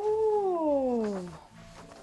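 A single long, meow-like animal call that rises and then falls in pitch, lasting about a second and a half.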